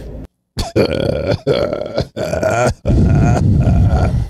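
A man laughing hard into a close microphone, in about four long, rough bursts.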